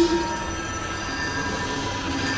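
Synthesized magic sound effect: a shimmering swell that peaks at the very start, then several high ringing tones held steady.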